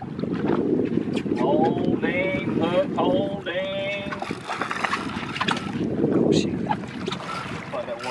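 Wind buffeting the microphone on an open boat, a steady low rumble, with short bursts of men's voices between about one and three and a half seconds in.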